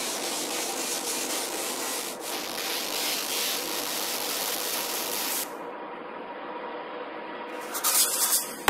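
A beatless breakdown in a dark techno mix: a rushing noise texture with the bass cut out. About five and a half seconds in, its top end is suddenly filtered off, leaving a quieter, duller wash.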